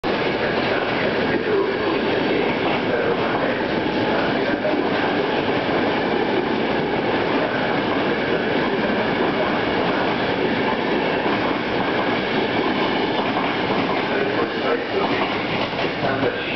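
Passenger coaches of a departing InterCityNotte night train rolling past, a steady loud rumble with the clatter of wheels on the track.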